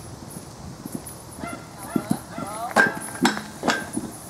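Horse cantering on sand arena footing, its hoofbeats thudding, with a person's voice in the middle and three sharp clicks, the loudest sounds, in the second half.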